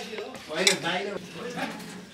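A metal serving spoon scraping and clinking against steel plates and an aluminium pressure cooker as cooked rice is dished out, with one sharp clink less than a second in.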